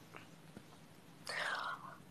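Quiet room tone with a few faint clicks, then a short breathy, whispered sound from a person in the second half.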